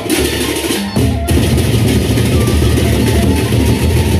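Sasak gendang beleq ensemble playing: pairs of hand cymbals clash in a dense, rapid rhythm over deep drums. The music gets louder about a second in, with the low drumming heavier from there on.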